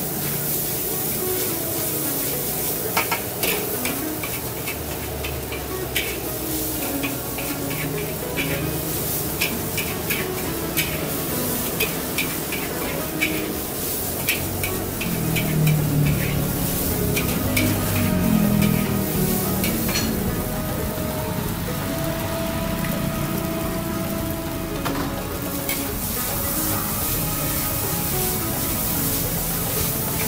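Fried rice sizzling in a metal wok over a gas flame, while a metal spatula scrapes and clacks against the wok. The clacks come in quick runs of strikes between about 3 and 20 seconds in.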